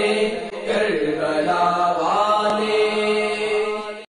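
A voice singing a slow devotional Urdu chant (a manqabat on the martyrs of Karbala) in long, gliding held notes, fading out near the end.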